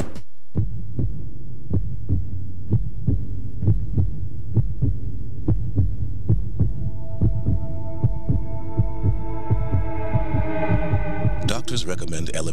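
Heartbeat sound effect, thumping about twice a second over a low steady hum. From about halfway, a sustained tone with overtones comes in and grows fuller until a cut near the end.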